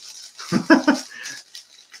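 Plastic bag crinkling as gloved hands pull chillies out of it, with a man's short laugh about half a second in.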